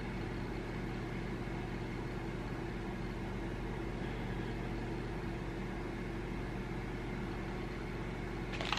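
A steady low hum with a faint hiss underneath, even throughout with no distinct events: the room's background tone.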